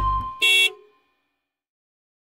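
The last note of a children's song dies away, then one short honk of a cartoon bus horn sound effect.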